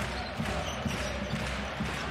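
Basketball being dribbled on the hardwood court, a few faint bounces, over the steady noise of the arena crowd.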